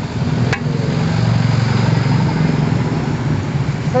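Road traffic: a motor vehicle's engine rumbling past, swelling through the middle and easing off. A single sharp click about half a second in.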